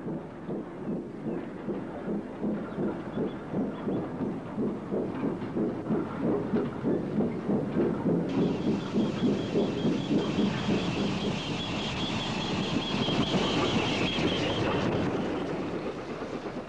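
A Great Western branch-line pickup goods train running past with a steady rhythmic beat of about three a second. About halfway through, a high-pitched squeal joins in and fades shortly before the end.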